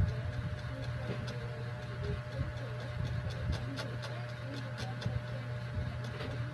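A steady low hum with faint scattered clicks over it: background room noise.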